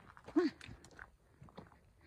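Footsteps crunching on a loose stony trail, a few steps in a row, with a brief voiced hum from the walker about half a second in.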